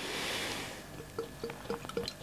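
Lager being poured from a glass bottle into a pilsner glass. A soft rush of pouring beer comes first, then from about a second in the bottle neck glugs regularly, about four glugs a second.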